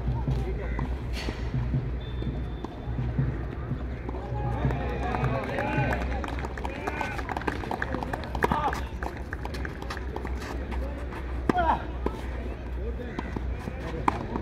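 Tennis rally on a clay court: racket strikes on the ball at intervals, with players' footsteps and people talking in the background over a steady low hum.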